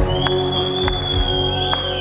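Live rock band playing a passage without vocals: held chords and regular drum hits, with one long high note sustained over the top.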